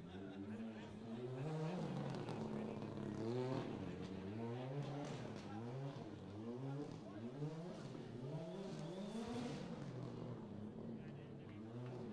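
Ford Fiesta rally car's engine revving up and dropping back again and again as it is driven hard, the pitch climbing and falling several times in quick succession.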